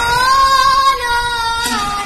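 A child singing one long held note of an Assamese naam-prasanga devotional chant, the pitch rising slightly and then stepping down near the end.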